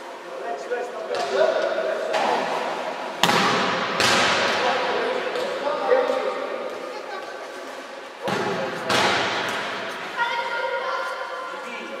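Voices chattering in a large echoing hall, cut through by loud hard thumps that ring on in the room: two a little past three and four seconds in, and two more around eight and nine seconds in.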